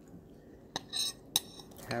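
Metal spoon clinking and scraping against a bowl of chili: three or four short light clinks in the second half, one with a brief ring.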